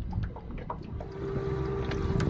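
Low rumbling wind-and-water noise around a small boat with a few light knocks; about halfway through, a steady hum starts, from the small air pump aerating the live-bait tank.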